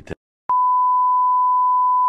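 A steady electronic test-tone beep, one unwavering high pitch, the reference tone that goes with TV colour bars, starting about half a second in and held at a constant level.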